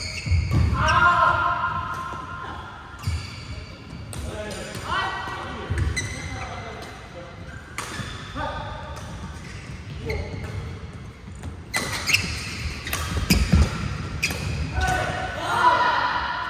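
Badminton doubles rally: rackets strike the shuttlecock in sharp cracks every second or so, echoing in a large sports hall, with players' voices between the shots.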